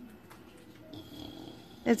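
A sleeping pet pig snoring softly, the faint breathing growing a little louder in the second half.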